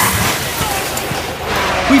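Steady rushing trackside noise with an Audi R8 running faintly in the distance as it drives away; a voice starts at the very end.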